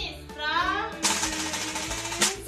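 A child's voice briefly over background music, then about a second of hiss that stops near the end.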